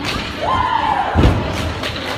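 A basketball bouncing on a hardwood gym floor, one heavy thud about a second in, in an echoing gym over crowd voices. Just before it a single voice calls out, rising and falling.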